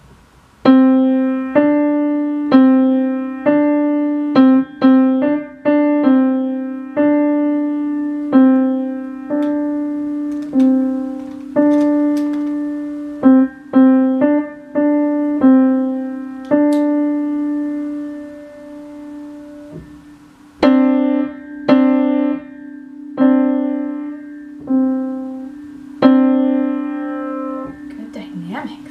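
Upright piano played one note at a time: a simple beginner's melody of single notes around middle C, each struck and left to ring and fade. The notes stop for a few seconds about two-thirds of the way through, then the melody resumes.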